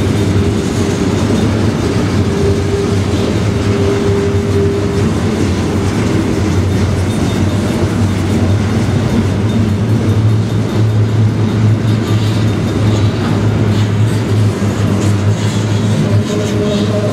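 Double-stack intermodal freight cars rolling past close by: a loud, steady noise of steel wheels on rail with a low hum under it.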